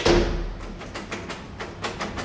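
Key worked in the cylinder of an old knob lock, rusted by bathroom water: a sharp metallic click with a short thump at the start, then a run of small clicks as the key and knob are turned.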